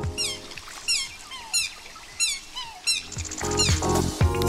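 Recorded songbird chirps: a bird repeats a quick high chirp that sweeps downward, five times, about two-thirds of a second apart, with a few fainter lower calls between. Background music comes back in about three seconds in.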